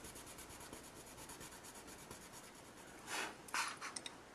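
Prismacolor coloured pencil rubbed quickly back and forth on Bristol paper to lay a small colour swatch: faint, even strokes several times a second. Near the end come two brief, louder rustles as the paper is handled.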